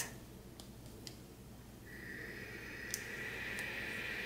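Steam iron starting a steady hiss with a thin high whine about halfway in, growing slightly louder as it is pressed onto fusible hem tape on a knit sweater; a few faint clicks before it.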